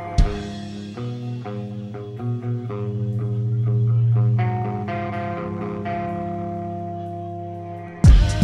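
A rock band playing live in a quiet instrumental passage without drums: effects-laden electric guitar and bass guitar holding sustained notes that change in steps, the bass swelling up and fading back, with one sharp thump just after the start.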